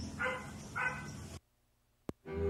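A dog barking twice, two short barks about half a second apart over a low background hum. The sound then cuts off suddenly to silence.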